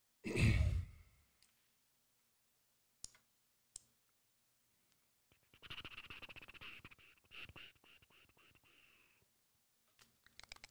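A person's heavy sigh close to the microphone, lasting under a second, is the loudest sound. Two single clicks follow, then a few seconds of rapid clicking with a faint hiss.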